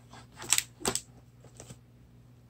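Plastic blister pack holding a craft paper punch being set down on a table and handled: two sharp plastic clacks about half a second apart, then a fainter one.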